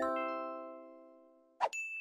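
Edited-in chime sound effect: a bright bell-like chord of several tones that rings and fades away over about a second and a half, then a short swish and a new high ding starting near the end.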